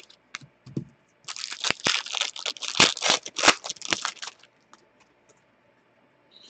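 Hockey trading cards sliding and rubbing against each other as a stack is flipped through by hand. It is a quick run of dry scraping and crackling that starts about a second in and lasts about three seconds, after a few light ticks.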